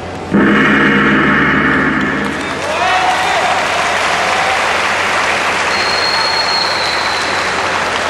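A loud electronic contest buzzer sounds steadily for about two seconds, marking the end of the judo bout. The arena crowd then applauds and cheers.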